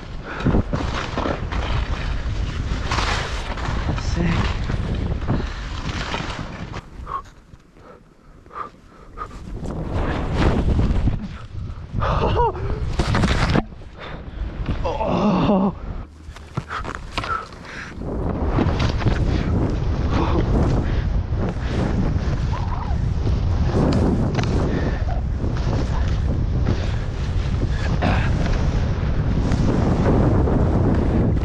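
Wind buffeting the camera microphone and skis running through deep powder snow during a fast first-person ski descent, a dense rushing noise that eases for a few seconds about eight seconds in.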